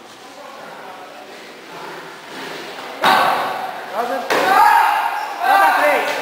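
Two sharp thuds, about three seconds and a little over four seconds in, of taekwondo kicks striking a padded chest protector, with voices shouting right after them.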